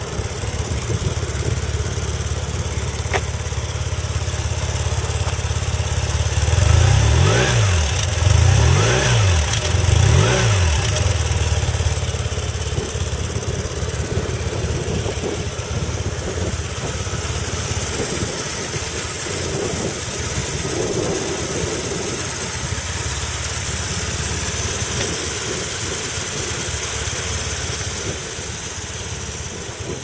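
BMW R1150R's 1130 cc air/oil-cooled boxer flat-twin engine idling, blipped three times in quick succession about seven to eleven seconds in, then settling back to a steady idle.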